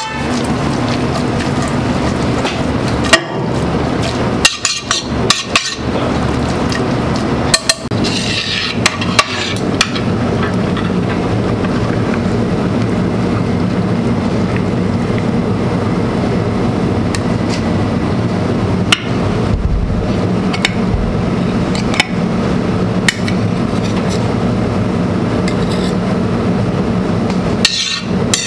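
Metal tongs tossing and turning pasta in a stainless steel sauté pan, with scattered clinks and scrapes of metal on metal, over a steady kitchen hum.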